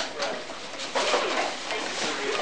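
Indistinct voices of people talking in a small room, with short knocks and rustles of cardboard boxes being handled, one near the start and another about a second in.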